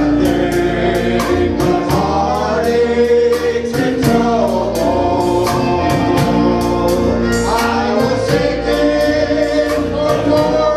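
A men's vocal group singing a gospel song together into microphones, over instrumental accompaniment with a steady beat.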